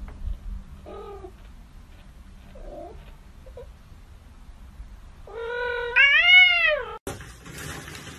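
A cat meowing: two faint short mews, then one long, loud meow whose pitch rises and then falls, lasting about a second and a half.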